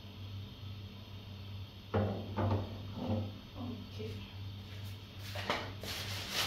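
Metal cookware clattering on a gas stove: a sharp knock about two seconds in, a run of knocks and scrapes after it, and a few sharp clicks near the end, as a second pan is set on a burner. A steady low hum runs underneath.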